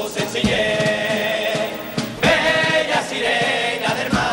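Male carnival murga chorus singing together in unison, accompanied by acoustic guitar and drums.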